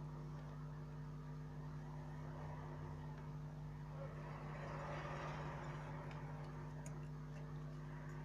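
A steady electrical hum with several steady low tones, from the repair bench's equipment. A few faint small clicks come near the end, from metal tweezers working on the phone.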